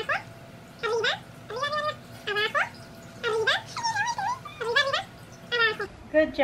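Small dog whining in a string of short, high-pitched cries, about seven in six seconds.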